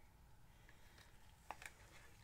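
Near silence, with a faint short click about one and a half seconds in: a wooden craft stick against a plastic cup while scraping acrylic paint into it.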